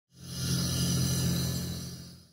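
Short logo-intro sound effect: a swell of bright hiss over a low steady hum that rises quickly, holds, and fades away as the logo appears.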